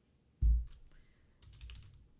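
A dull thump about half a second in, then a quick run of keystrokes on a computer keyboard, as a stock ticker symbol is typed in.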